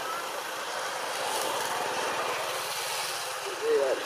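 Steady outdoor background noise, with a person's voice briefly near the end.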